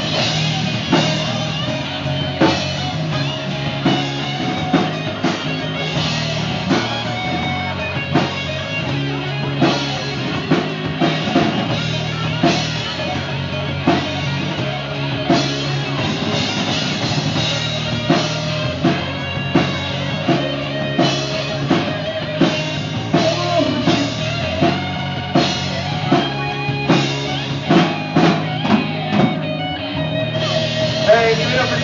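Live rock band playing an instrumental passage: electric guitars, electric bass and a drum kit keeping a steady beat, with no singing.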